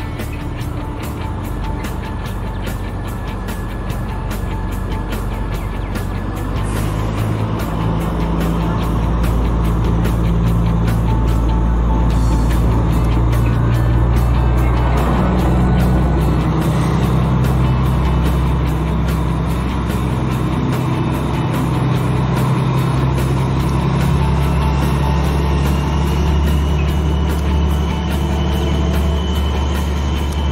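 Background music with a steady beat, laid over the low, steady running of a Sri Lanka Railways Class S8 diesel multiple unit train, which grows louder over the first several seconds.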